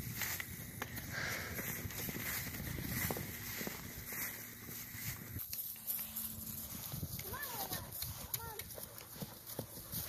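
Spotted pony's hooves beating on grass turf at a canter, a run of soft dull strikes.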